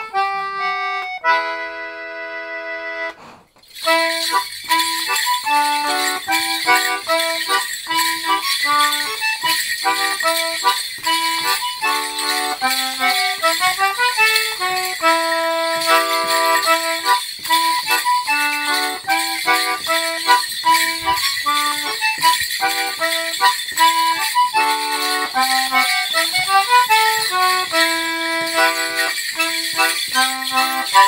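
Concertina holding a chord for about three seconds, then after a brief break playing a lively morris dance tune note by note. From the start of the tune, a steady jingling runs above it, the bells of a morris dancer dancing to it.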